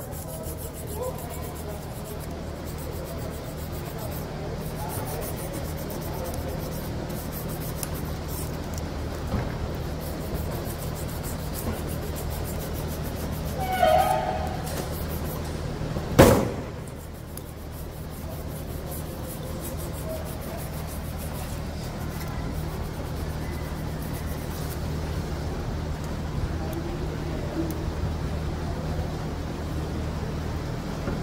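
Hand work on the small steel parts of a free-wheel hub: a coil spring being worked into its gear ring with a thin screwdriver, faint metal scrapes and handling over a steady low hum. One sharp metallic click about halfway through.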